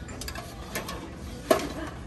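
Items on a metal store shelf being handled and shifted, giving a few light clicks and knocks and one sharp knock about one and a half seconds in.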